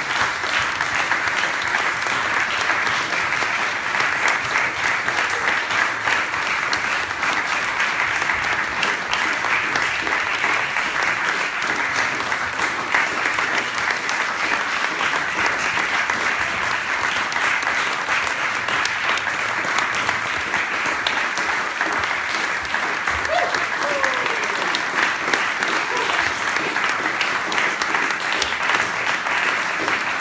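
Concert audience applauding steadily, a dense, even clatter of many hands that does not let up.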